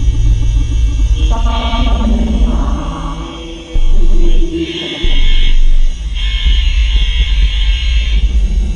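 Loud improvised electronic drone music: a deep, continuous low drone with shifting pitched layers and processed voice-like fragments over it, broken by several bursts of higher noise each lasting about a second.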